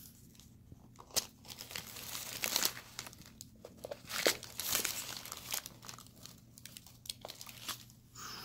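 Tissue paper crinkling as a small wooden box is handled on it, with scattered sharp clicks and knocks as the box's metal latch is worked and the lid opened.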